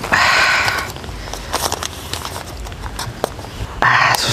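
Paper and plastic wrapping rustling and crinkling as a takeaway rice packet wrapped in brown paper is unfolded by hand, with a louder rustle near the start followed by small scattered crackles.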